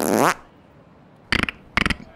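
Human beatbox into a handheld microphone: a short buzzing mouth sound falling in pitch, then a pause and three sharp percussive hits in quick succession about a second and a half in.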